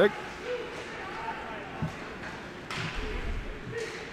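Ice hockey play in an echoing rink: a few sharp stick-and-puck clacks over steady skate and arena noise, with faint distant voices.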